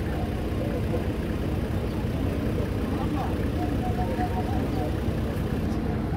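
Steady low rumble of an idling engine, even throughout, with faint voices murmuring in the background.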